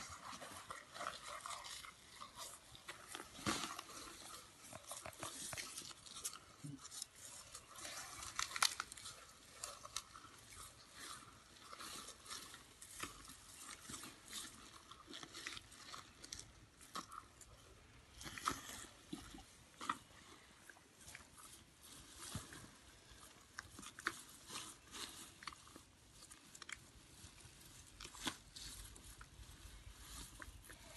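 A young African elephant feeding on hay and cut grass: faint, irregular crunching and rustling as the trunk gathers and breaks the stalks and the elephant chews.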